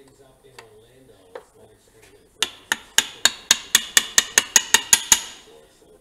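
A metal wrench clicking against a plug with an aluminum sealing washer as it is run down and tightened into the bottom of a Honda CT70 engine's crankcase. Faint scattered clicks come first. About two seconds in, a run of about fifteen sharp clicks begins, coming faster and faster until they stop shortly before the end.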